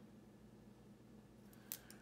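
Near silence, then a few small, sharp clicks near the end from plastic pens being handled on a wooden table.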